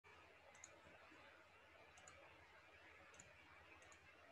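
Near silence: faint room hiss with four small double clicks spread through it, irregularly spaced.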